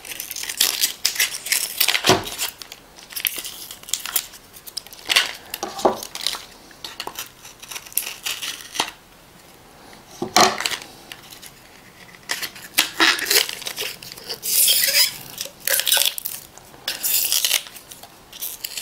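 Hands tearing open and picking at the inner seal of a plastic supplement bottle: irregular bursts of scratchy tearing and crinkling with sharp plastic clicks, quieter for a couple of seconds around the middle.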